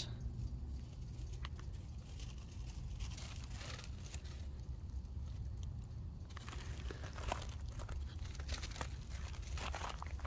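Faint rustling, scuffing and handling noise from a handheld phone being carried among the tomato plants, with scattered light clicks over a low steady rumble.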